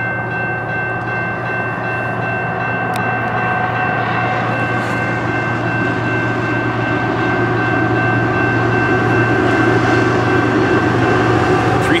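Level-crossing warning bell ringing steadily, with the rumble of approaching CN GE ET44AC diesel locomotives growing louder over the second half.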